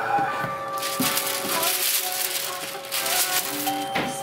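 Foil paper wrapping rustling and crinkling as sneakers are lifted out of their box, loudest from about a second in until near the end, over background music with steady held notes.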